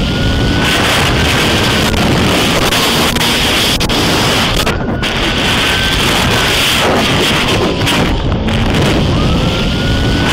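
Heavy wind buffeting and road rumble from a car moving at speed, with a police siren wailing up and down about every three to four seconds.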